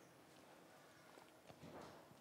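Near silence: room tone, with a few faint taps in the second half.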